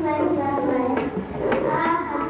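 Young children singing together in high, wavering voices.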